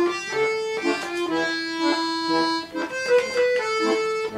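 Bayan, a chromatic button accordion, playing a lively Russian song melody over rhythmic left-hand chords; one melody note is held for about a second and a half in the middle.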